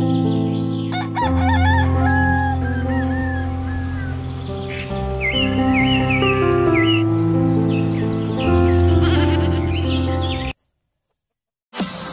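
A rooster crowing over steady background music, once about a second in and again around the middle. Near the end the sound cuts out for about a second, then electronic dance music with a beat begins.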